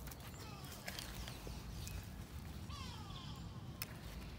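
Faint clicks and rustles of bean plants being handled, with a bird's falling call in the background about three seconds in.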